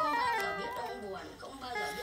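Casio VL-1 monophonic synthesizer playing a quick descending run of short beeping notes through a small amp's delay, each note repeated by fading echoes so the run cascades downward. A few new, higher notes come in near the end.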